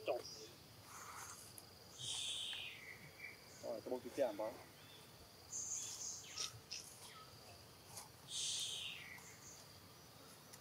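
Outdoor ambience: a faint steady high insect drone, with two short high calls that step down in pitch, one about two seconds in and one near the end, typical of birds. A brief pitched, voice-like call is heard near the middle.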